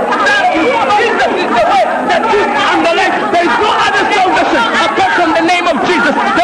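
Several people talking and calling out over one another at once, a babble of overlapping voices with no single voice standing out.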